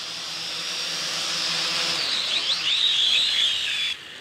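MJX X601H hexacopter's six motors and propellers whining, growing louder as the drone comes close. About halfway through, the pitch starts wavering up and down as the motors change speed while it is caught and held by hand. The sound then cuts off suddenly.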